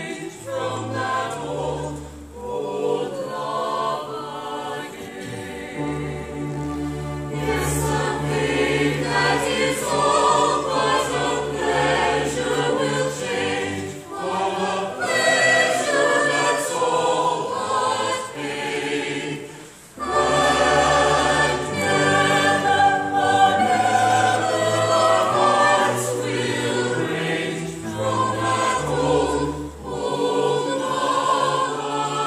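Operetta chorus and soloists singing together in full voice, accompanied by a pit orchestra with sustained bass notes. The music dips briefly just before two-thirds of the way through, then comes back louder.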